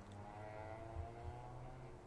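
A distant vehicle engine, a drawn-out tone slowly falling in pitch as it passes on the road, over a steady low traffic rumble.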